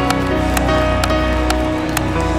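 Worship band playing live: sustained keyboard chords over a steady bass, with a regular beat of sharp percussive hits about twice a second.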